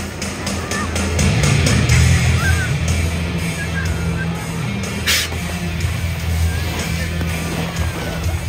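Fire engine diesel running steadily at the pump while supplying the hose lines, under the crackle of a car burning. There is a short burst of hiss about five seconds in.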